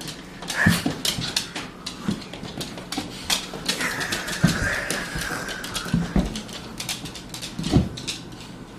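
Small dog playing over a person lying on a hard wooden floor: scuffling with its claws clicking on the boards, and one long high whine in the middle.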